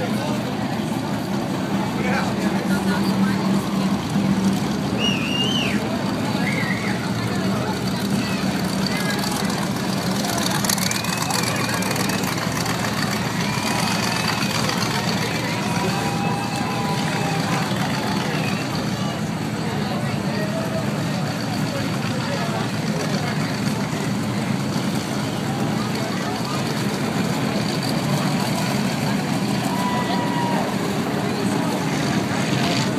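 Engines of several dirt-track race cars running steadily as the pack circles the oval, a constant low hum heard from the grandstand, with voices of people nearby over it.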